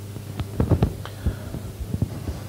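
Steady low electrical hum from the talk's amplification or recording chain, with a few soft, low thumps scattered through it.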